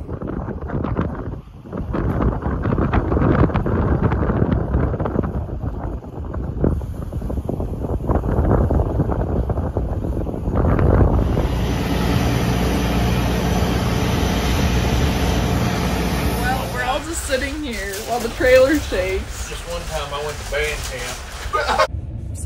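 Gusty wind rumbling and buffeting on the microphone for about the first half, then a combine's diesel engine humming steadily for several seconds, followed by voices.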